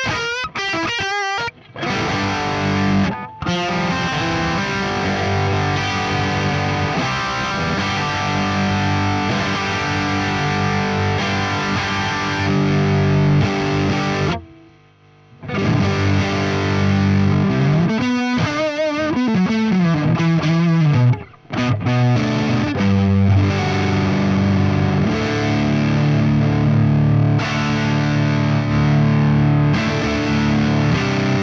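Distorted electric guitar played through an amp tone being compared with its fresh Quad Cortex Neural Capture, with delay and reverb on the monitoring. It goes from chords to lead lines with bent notes and wide vibrato, and breaks off for about a second halfway through.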